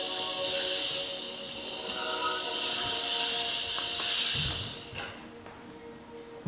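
Stage fog machine hissing steadily as it blows out fog over soft sustained background music; the hiss cuts off about four and a half seconds in, just after a low thump.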